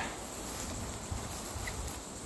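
A steady high-pitched insect chorus, with low rustling and handling noise from walking through grass.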